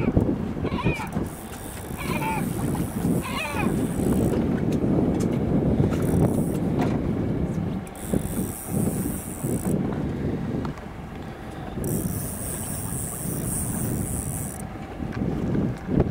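Wind buffeting the microphone and boat noise over open sea, steady throughout. About four short gull calls come in the first few seconds.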